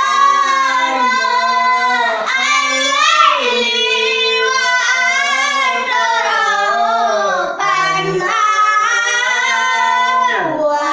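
Young children singing together with a man, unaccompanied, in long wavering notes that glide up and down.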